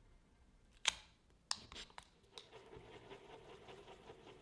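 Two-part epoxy handled and mixed: a sharp click about a second in and two smaller clicks from the syringe, then a soft, steady scraping as a wooden stick stirs the glue on a card block.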